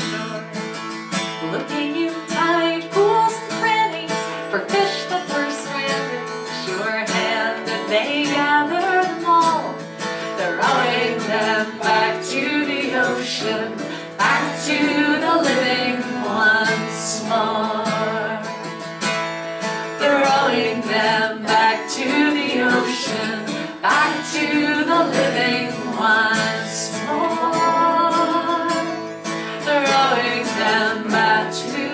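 Live Celtic folk song: a woman singing over a strummed and plucked acoustic guitar.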